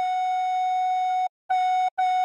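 Recorder playing a melody: one long held note, then after a short break the same note played again briefly twice, the repeated 'sol sol' of the tune.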